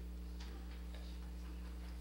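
Steady low electrical hum from the open microphone and sound system, with a few faint, scattered clicks and taps.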